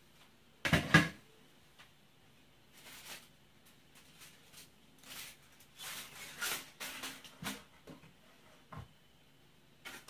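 A metal pot lid clatters about a second in, followed by a run of crinkling from aluminium-foil-wrapped tilapia tamales being handled over the steaming pot, with a dull thump near the end.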